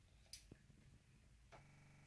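Near silence with two faint short clicks about half a second in, from a utility-knife blade being pressed into a water-filled plastic bottle to poke a hole in it.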